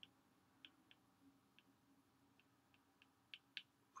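Faint, irregular ticks of a stylus tip tapping on a tablet's glass screen during handwriting, about a dozen of them, two a little louder near the end, over near-silent room tone.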